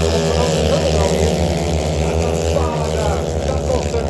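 Longtrack racing motorcycles' engines running steadily as the bikes circle the dirt oval, a continuous loud drone with layered engine tones.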